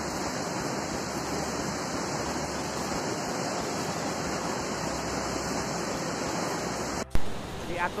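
Steady rush of a fast, rocky river running in rapids. It breaks off abruptly about seven seconds in, and a man starts speaking.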